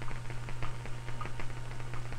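Small Van de Graaff generator running: a steady low hum with irregular crackling clicks throughout.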